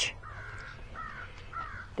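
A crow cawing three times, faint, in short calls about half a second apart.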